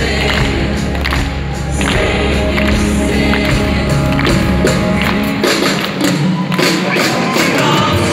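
Live pop-rock band playing an instrumental passage, with drum and cymbal hits throughout. About five and a half seconds in, the bass drops out, leaving the drums, cymbals and higher instruments.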